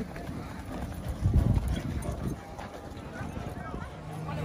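Horses' hooves clopping on a dirt track as a racehorse is walked beside a pony horse, with a louder low rumble a little over a second in.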